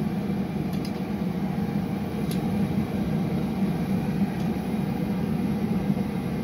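Steady low rushing noise from a glass studio's running gas burners and electric fan, with one faint click a couple of seconds in.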